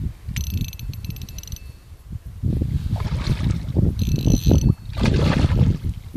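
A hooked fish thrashing and splashing at the water's surface close to a landing net, the splashes growing louder from about halfway through. Twice, briefly, a high fine whirr of a fishing reel being cranked.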